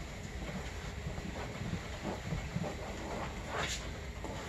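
A cloth towel rubbing soapy water off a vinyl snowmobile seat: repeated soft scuffing strokes, with a sharper swish about three and a half seconds in.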